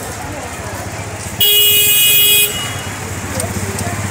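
A vehicle horn sounds once, loud and about a second long, over busy street traffic and crowd noise.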